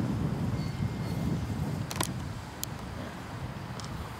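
Low outdoor rumble that fades away steadily, with a few short light clicks, two close together about halfway and one near the end.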